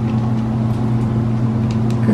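A steady low hum with a faint hiss, holding the same pitch throughout.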